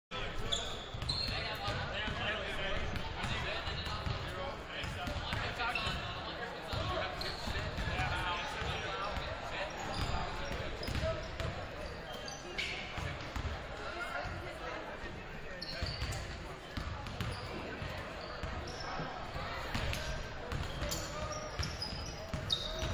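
Several basketballs bouncing on a hardwood gym floor, in many overlapping thuds, over the steady chatter of a crowd echoing in a large gym.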